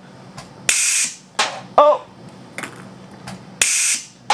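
Pneumatic ping-pong-ball launcher firing two short blasts of compressed air, each starting sharply, about three seconds apart, with a few light clicks between them.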